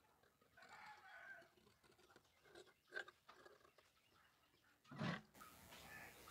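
Faint snipping and crunching of large tailoring shears cutting through cloth, with a short louder snip just before the end.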